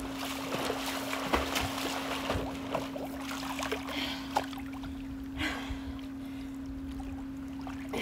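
Swimming-pool water splashing and lapping close to the microphone, with irregular splashes through the first five or six seconds. A steady low hum runs underneath.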